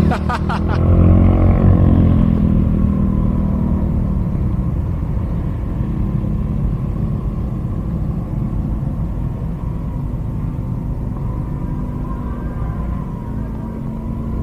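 Rusi Gala 125 scooter's 125 cc engine running while ridden, with a steady low drone and wind rumble on the camera's microphone that gradually eases off. Its six loose side bearings have just been replaced, and the owner says the scooter now runs quietly.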